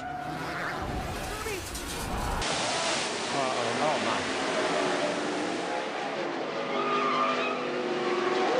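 Race car engines with tyre skidding. About two and a half seconds in, the sound cuts to a dense, noisy mix of engines and shouting crowd voices from a stock-car racing crash.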